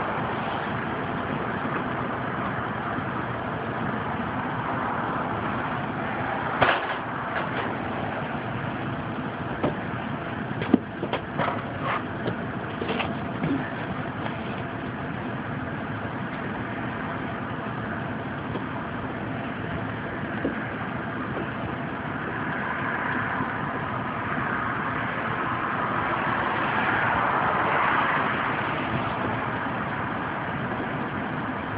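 Air-conditioning air handler's blower running steadily, with air rushing through the ductwork. There are a few sharp clicks and knocks about 7 seconds in and again around 11 to 13 seconds, and the air noise swells a little near the end.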